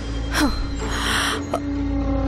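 Dramatic TV-serial background score: a sustained drone, with a falling whoosh effect about half a second in and another about a second and a half in, and a short breathy hiss between them.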